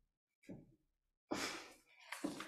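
Mostly quiet, with a faint footstep about half a second in, then a sigh close to a microphone, the loudest sound, fading out over about half a second.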